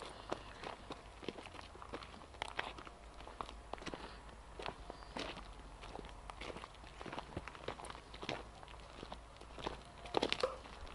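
Footsteps on a dry dirt trail strewn with small stones and pine litter, an uneven walking pace of about two steps a second.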